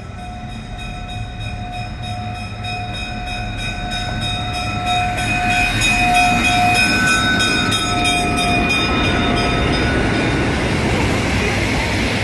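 Burlington EMD E5A diesel locomotive No. 9911A passing close by at the head of the Nebraska Zephyr's stainless-steel cars. Its bell rings steadily and dies away after about nine and a half seconds, while the engine and wheel noise grow louder as the train goes by.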